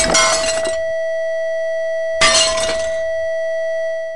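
A steady loud tone at a wine glass's natural frequency drives the glass into resonance, and the glass shatters with a crash right at the start; a second shattering crash follows about two seconds later while the tone holds.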